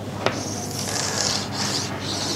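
Chalk drawn in long strokes across a blackboard: a short tap of the chalk about a quarter second in, then a steady scratchy rasp as the lines of a box are drawn.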